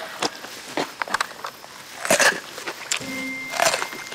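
Crisp crunches of teeth biting and chewing raw cucumber: a series of sharp crunches, the loudest about two seconds in.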